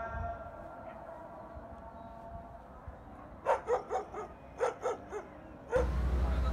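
A dog barking: a quick run of about eight short barks in two or three bunches, beginning about halfway through.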